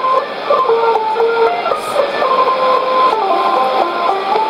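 Music from the Voice of Khmer M'Chas Srok shortwave broadcast on 17860 kHz, played through a Sony ICF-2001D receiver in AM: a simple melody of held notes stepping up and down, over an even hiss of shortwave noise, with the dull, cut-off top end of AM radio.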